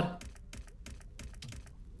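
An online video slot's reels spinning and landing, heard as a quick run of light clicks, about six a second.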